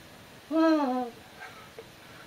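A man's short laugh-like vocal sound about half a second in: a single voiced note that rises slightly, then falls, lasting about half a second.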